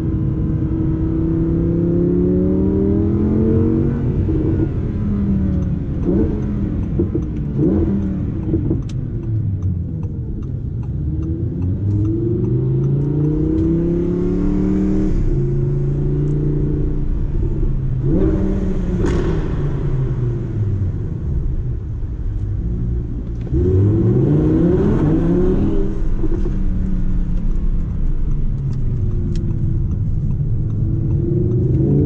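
Audi R8 V10 Plus's naturally aspirated 5.2-litre V10 heard from inside the cabin: revs rising and falling as the car slows and gears down, with quick rev spikes on the downshifts, then climbing again as it pulls away hard near the end.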